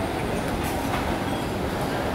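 A steady, low rumbling background noise with no clear rhythm or pitch.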